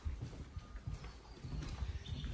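Footsteps on hardwood timber floorboards, a run of dull knocking footfalls, about two a second.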